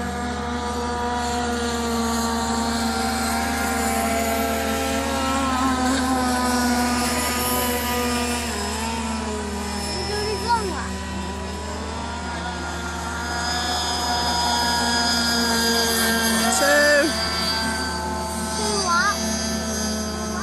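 High-revving boat engine running steadily as the boat speeds across the water, its pitch drifting slowly up and down.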